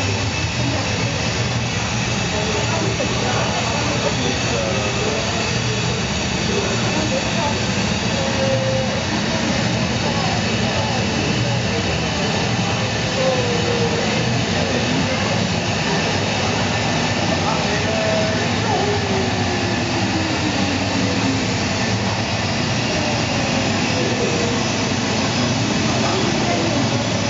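Steady jet-engine noise played over loudspeakers for a model airliner at a miniature airport, with the murmur of visitors' voices underneath.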